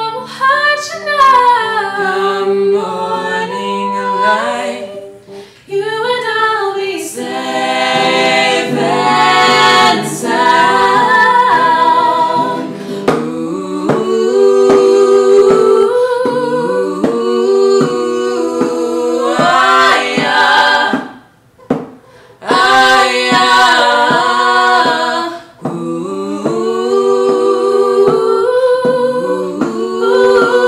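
Three voices, a young man and two young women, singing a slow song together in harmony over a softly played acoustic guitar, with a short break about two-thirds of the way through.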